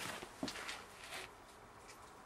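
Faint handling noise of a seed packet held up close to the microphone: a few soft taps and rustles in the first second or so, then near quiet.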